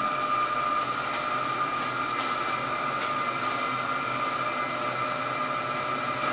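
Steady hum of the boiler room's machinery: the circulating pumps and motors of a wood chip boiler heating system. A constant high-pitched whine rides over the noise without change.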